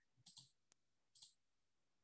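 Near silence: room tone with a few faint, short clicks, the first two close together and two more spaced out over the next second.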